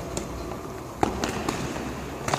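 Boxing gloves landing light punches in a sparring demonstration: a sharp smack about a second in, followed quickly by two smaller ones.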